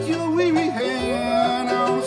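A bluegrass band playing live between sung lines: acoustic guitar strumming over upright bass, with a lead instrument sliding between notes on top.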